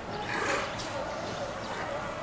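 Sea lions barking, with one loud, harsh bark about half a second in over a continuous chorus of fainter barks.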